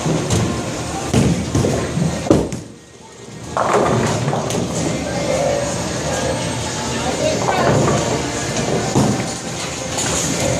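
Bowling alley din: background chatter and music over a steady noise bed, with a sharp thump about two seconds in and a short lull just after it.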